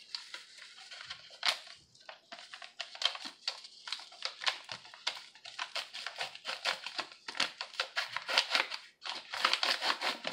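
A ranch seasoning mix packet crinkling in quick, irregular shakes as the mix is sprinkled out, with a brief pause near the end.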